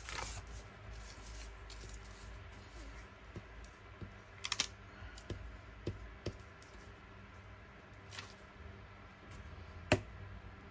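Quiet, scattered clicks and taps of paper craft work: a paper cutout and a glue stick being handled and rubbed over paper on a cutting mat, with a sharper click just before the end, over a faint low hum.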